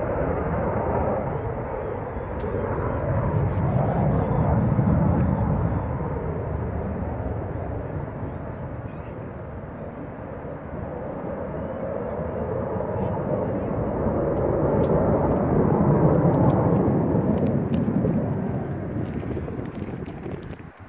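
B-2 Spirit stealth bomber's four turbofan jet engines passing overhead: a steady jet rumble that swells about four seconds in and again around fifteen seconds in, then fades near the end.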